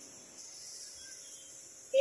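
Quiet kitchen room tone with a faint steady high hiss; a brief voice sound starts right at the end.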